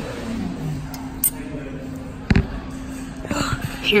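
Minute Key self-service key-cutting kiosk at work: a steady machine hum with a few light clicks, and one sharp clunk a little over two seconds in.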